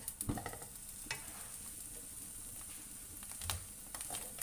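Chopped vegetables sizzling in oil in a nonstick wok as a wooden spatula stirs them. There is a steady faint hiss, with a few scrapes and knocks of the spatula on the pan: about a third of a second in, about a second in, and again near the end.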